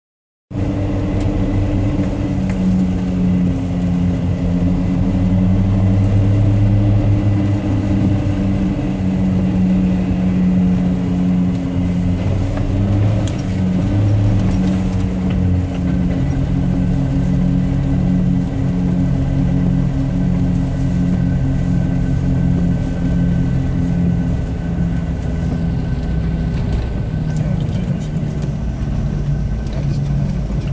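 A car engine running at steady cruising speed, heard from inside the cabin with low road rumble. The engine note shifts down a little about halfway through.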